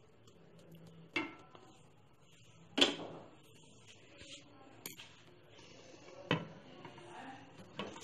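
Cookware knocking: four short, sharp clinks spread over several seconds, the loudest about three seconds in, with little else heard between them.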